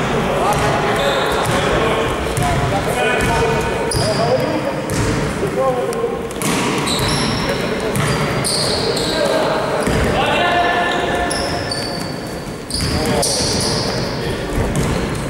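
A basketball bouncing on a gym floor during play, with sneakers squeaking and players calling out across a large echoing hall.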